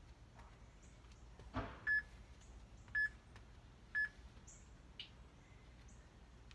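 Three short electronic beeps a second apart: a workout interval timer counting down the end of a rest break before the next work interval. A brief knock comes just before the first beep.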